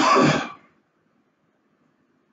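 A person clears their throat once, briefly, over by about half a second in. Then faint room tone.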